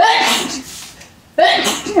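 A woman sneezing twice, about a second and a half apart. It is an allergic reaction to the dusty old donated clothes she is handling.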